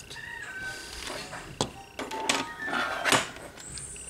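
Plastic nail swatch tips on metal clip holders being handled and set down on a swatch board: a few sharp clicks and knocks, the loudest near three seconds in.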